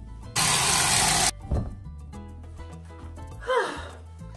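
A rush of water wetting hair: a loud, even hiss lasting about a second that starts and stops abruptly. Steady background music runs underneath, and a short sigh comes near the end.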